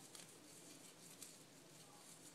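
Near silence, with faint soft rustles and scratches of hair being twisted between fingers, a couple of them a little louder about a quarter-second in and just after a second.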